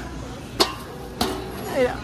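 Two sharp clicks about half a second apart as a bag of produce is set on the hanging pan of a spring dial scale, over the steady murmur of a busy store.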